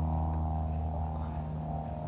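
A steady low hum, with a few faint ticks over it.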